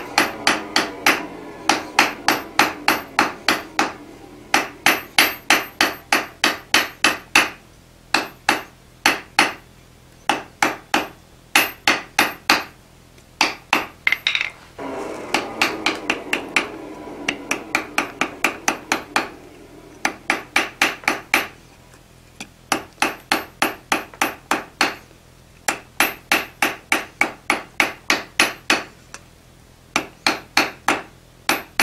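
Hand hammer striking a hot, thin iron bar on an anvil in quick runs of about three to four blows a second, with short pauses between runs. The bar is being drawn out lengthwise to about eighth-inch square stock for small nails.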